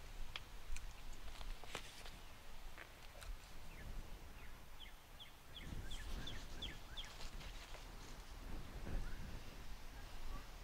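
A few light clicks in the first three seconds. Then a bird gives a quick run of about eight short, high, downward-sliding chirps, about four a second, over outdoor background.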